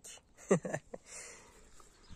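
A man's brief chuckle, a short voiced burst about half a second in, followed by a soft breathy exhale.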